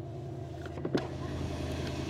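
Mercedes-Benz car idling, a low steady hum heard from inside the cabin, with a couple of faint clicks about halfway through.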